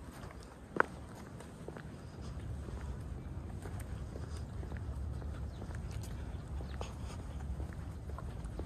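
Wind buffeting the microphone in a low rumble that grows stronger about two seconds in, with light footsteps on a paved path and one sharp click near the start.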